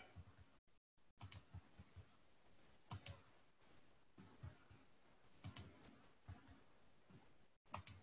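Faint, scattered clicks of a computer mouse, some in quick pairs, every second or two.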